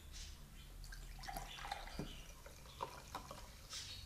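Kombucha poured from a glass bottle into a tall drinking glass: liquid splashing and glugging in irregular gurgles as the glass fills, mostly from about a second in.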